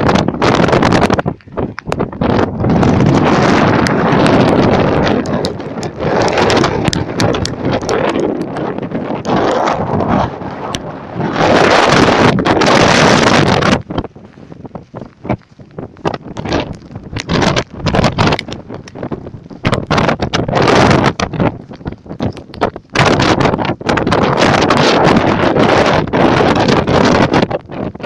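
Strong storm wind buffeting a phone's microphone: loud gusts that surge for a few seconds and drop back, with crackling distortion and a brief lull about halfway through.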